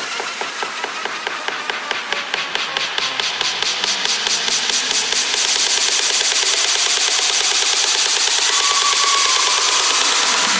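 Psychedelic trance build-up: the bass and kick drop out, and a rapid percussive roll speeds up until it blurs into a continuous rising noise sweep. A rising tone joins it near the end as the loudness climbs toward the drop.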